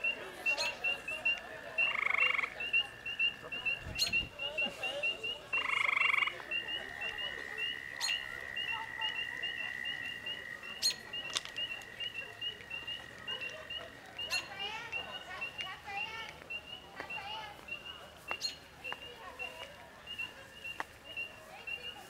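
Frogs calling from a pond: short loud trills of about half a second at about 2 and 6 seconds in, then a long steady trill that stops about two-thirds of the way through. All of it sits over a continuous, evenly spaced run of high chirps, with a few sharp clicks.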